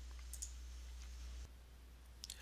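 Faint room tone with a steady low hum and a single soft computer mouse click about a third of a second in; the hum drops lower about one and a half seconds in.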